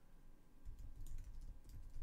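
Faint typing on a computer keyboard: scattered key clicks, with a low rumble underneath from about half a second in.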